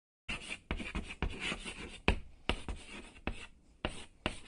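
Chalk writing on a chalkboard: a run of scratchy strokes, each starting with a sharp tap, about two a second.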